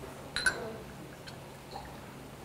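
Soju being poured from a glass bottle into a small shot glass, with one sharp clink of glass about half a second in.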